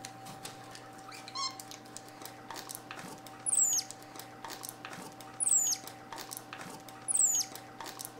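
Capuchin monkey giving thin, very high calls that sweep down in pitch, three of them about two seconds apart in the second half, after a softer wavering call just over a second in. Faint paper rustling and a steady low hum underneath.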